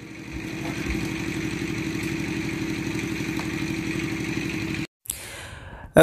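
A small engine running steadily with a fast, even pulse, typical of a motorcycle or small petrol engine idling close by. It swells during the first second, then cuts off suddenly about five seconds in, followed by a short fading swish.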